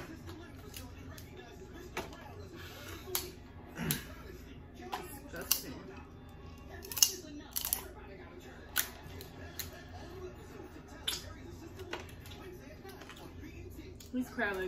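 Crab leg shells being cracked and snapped apart by hand while eating: scattered sharp clicks and snaps, a few seconds apart, over quiet room tone.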